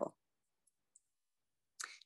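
Near silence with two faint clicks around the middle, then a short intake of breath near the end.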